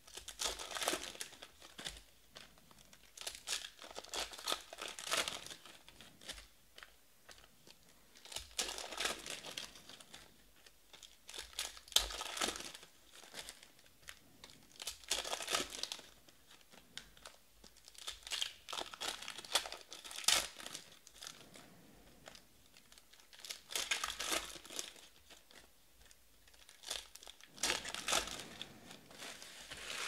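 Foil trading-card pack wrappers being torn open and crinkled by hand, in bursts every few seconds with short quiet gaps between.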